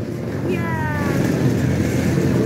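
Kart engines running in the background, with one engine's note falling in pitch about half a second in.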